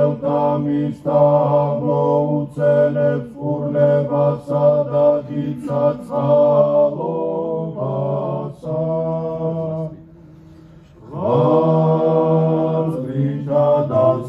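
A group of male voices sings Georgian Orthodox church chant in sustained harmony, as a doxology. They pause briefly about ten seconds in, then come back in together.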